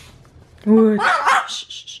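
A chihuahua gives a short bark about half a second in, and a woman answers by shushing it repeatedly.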